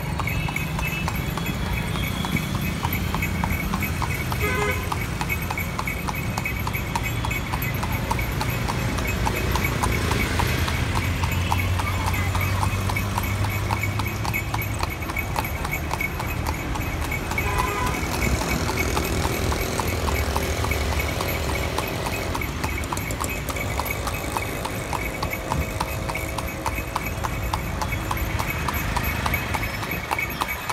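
A horse's hooves clip-clopping in a steady, even rhythm on a paved road, heard close up from the carriage it is pulling. Motor traffic rumbles low underneath.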